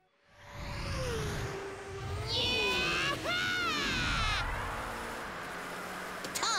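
Cartoon soundtrack of music and sound effects, swelling up from silence, with a low rumble. Near the middle there are high, warbling tones that bend up and down in pitch.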